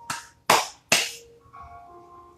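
Three hand claps about half a second apart, then quiet background music with soft held notes.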